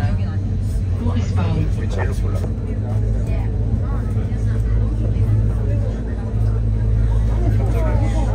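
Steady low rumble of a moving vehicle heard from inside the passenger compartment, with people's chatter in the background.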